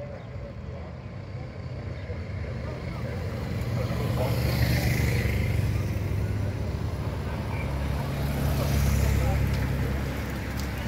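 Escort motorcycles and a lead car driving slowly past at the head of a bicycle race. Their low engine hum builds from about three seconds in, is loudest around the middle and again near the end, and is mixed with spectators' voices.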